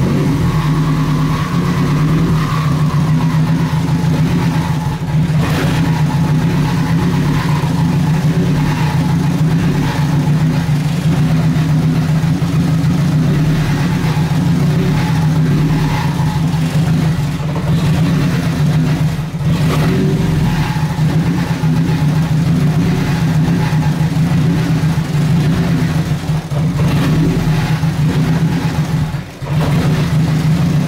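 Nissan KA24DET turbocharged 2.4-litre inline-four running at a steady idle just after being started, its spark plugs freshly re-gapped to about 0.025 in to stop it breaking up under boost. The owner says it usually runs a little rough at first until it warms up.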